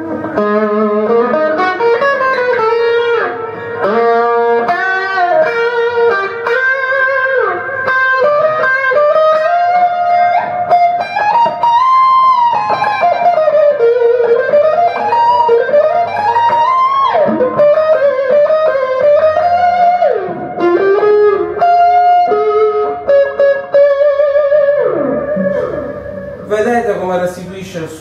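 Stratocaster electric guitar played through a compressor, set fairly low, into a distortion pedal: a lead line of long sustained notes with string bends and slides.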